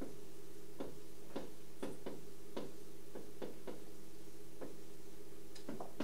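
Marker writing on a whiteboard: irregular light taps and short strokes, about one or two a second, over a steady hum of room equipment.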